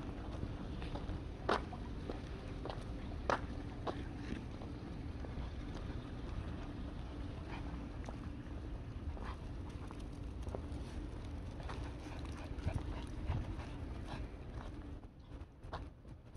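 Footsteps of a person walking three small dogs on leashes over pavement, with a few sharp clicks standing out, over a steady low rumble.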